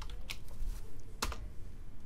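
Computer keyboard keystrokes: three separate key presses, the loudest about a second in, as a cell reference in a formula is retyped.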